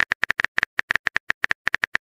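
A chat app's simulated keyboard typing sound: quick, even clicks, about eight a second, as a message is typed out letter by letter.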